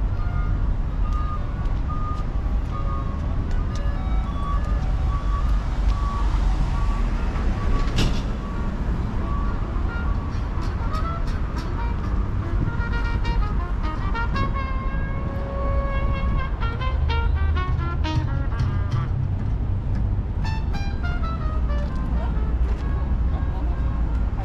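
Steady low rumble of road traffic beside the pavement, with runs of short, clear pitched notes over it in the second half, some falling in pitch like a melody.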